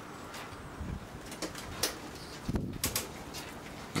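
Faint steady background noise with several light clicks scattered through it and a couple of soft low sounds; no bang or buzz from the damaged drive as it is powered up.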